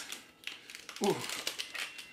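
Clear plastic bag crinkling in short crackly bursts as it is opened around a deck of cards.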